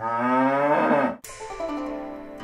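A cow mooing sound effect: one long moo lasting a little over a second that cuts off sharply, followed by light plucked-string music notes.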